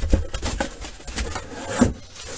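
Cardboard shipping box being handled and shifted, its card rubbing and scraping, with a sharp knock at the start and a louder knock near the end.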